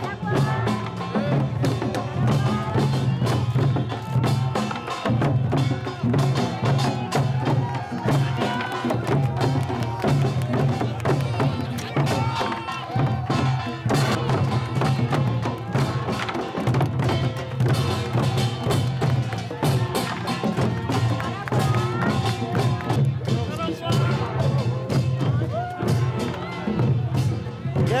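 Traditional Korean drumming in the pungmul style, barrel drums beating in a busy, continuous rhythm, mixed with a crowd cheering and calling out.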